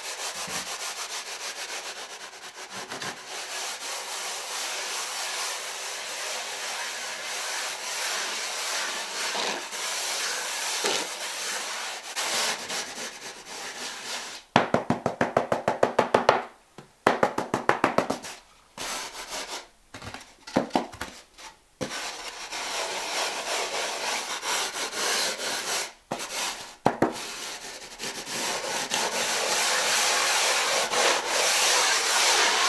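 A steel trowel and a hand float scraping and rubbing over a sand-and-cement deck mud bed as the shower floor is floated smooth. The scraping runs continuously, breaks into a run of quick, loud back-and-forth strokes about halfway through, goes stop-start for a few seconds, then settles back into steady scraping, louder near the end.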